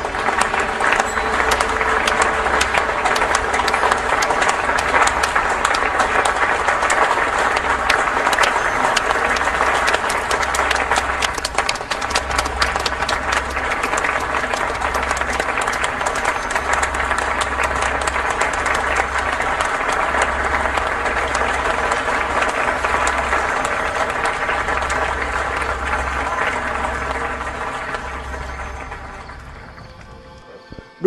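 Dense crackling clatter like applause, over music with steady tones and a slow, even low pulse; it fades out over the last few seconds.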